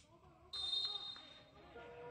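Referee's whistle: one short, high blast about half a second in, signalling the corner kick to be taken. Faint shouts of players on the pitch follow.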